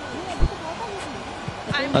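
Faint background voices over a steady murmur of ground ambience, with a single low thump about half a second in.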